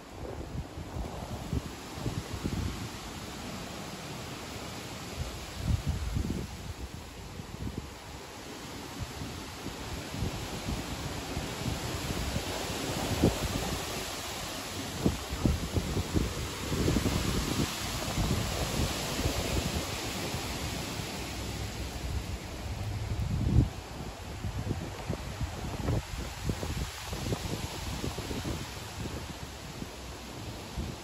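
Strong gusting wind through leafy trees, the leaves rustling in a steady hiss that swells through the middle stretch, with low gusts buffeting the microphone.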